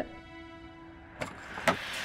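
Soft background music holding a steady chord, then two sharp clicks about half a second apart in the second half.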